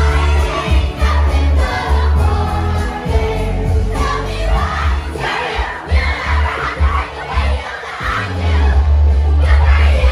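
Dance music with a heavy bass played loud over a PA system, with a crowd of children shouting and singing along. The bass drops out briefly about eight seconds in, then comes back.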